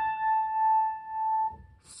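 A single piano note, A, struck with one finger, ringing on and dying away about a second and a half in.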